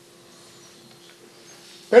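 A pause in a man's talk: faint room tone with a thin steady hum, then his voice comes in loudly and suddenly near the end.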